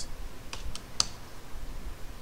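A few separate keystrokes on a computer keyboard, the sharpest about a second in, over a faint low rumble.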